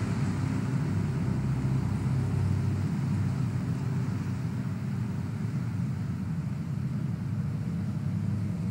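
Steady low rumble of road traffic, the continuous hum of many cars on a city freeway.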